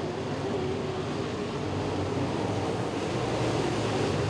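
Dirt-track open wheel modified race cars' engines running at speed around the oval: a steady engine drone over a wash of noise, growing slightly louder near the end.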